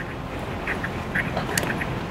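Short animal calls, likely birds, sounding about a dozen times at irregular intervals over a steady outdoor hiss, with a sharp click about one and a half seconds in.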